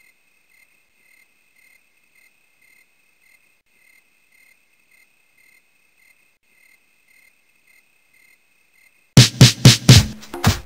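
Faint chirping of crickets, pulsing about twice a second, until loud music with heavy beats cuts in near the end.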